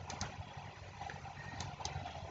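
Quiet background room noise with a low steady hum in a pause of narration, with a few faint soft clicks.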